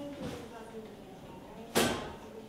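Faint voices in the room, then a sudden short burst of noise near the end, the loudest sound, fading quickly.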